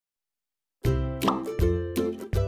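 Outro background music: the tune cuts off abruptly, there is dead silence for most of a second, then a new tune of short, separate notes begins.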